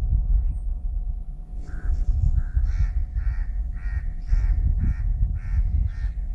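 Gusty wind buffeting the microphone with a heavy rumble. From about two seconds in, a bird calls over and over, about twice a second, in short harsh calls.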